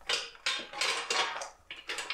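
Frozen chips poured from a stainless steel bowl into an air fryer's plastic basket, clattering in several short bursts.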